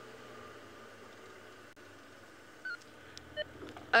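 Open safari game-drive vehicle's engine running steadily at low revs as it drives slowly along a dirt track, with a couple of short faint beeps from the two-way radio near the end.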